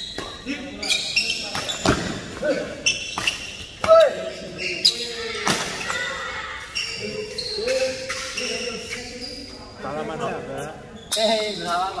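Badminton doubles rally: sharp racket hits on the shuttlecock every second or so, the loudest about four seconds in, with shoes squeaking on the court mat and players' shouts, echoing in a large hall.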